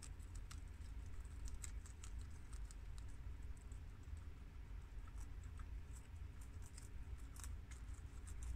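Guinea pigs munching romaine lettuce: quick, irregular crisp crunching clicks of their chewing, over a low steady hum.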